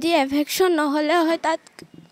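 Speech only: a young woman talking into a handheld microphone, falling quiet about one and a half seconds in.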